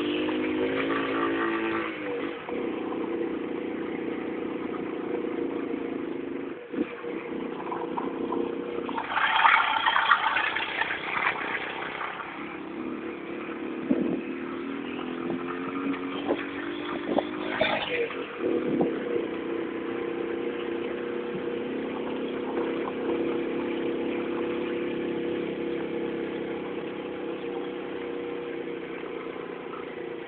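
Honda Pop 100's small air-cooled single-cylinder four-stroke engine running under load, climbing a rough dirt track. The engine note dips and rises a few times, and there are knocks from the bumpy ground and a louder rush of noise around ten seconds in.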